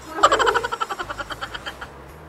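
A high-pitched voice in a rapid, pulsing run of short cries, about eight to ten a second. It starts loud just after the start and fades away over about a second and a half.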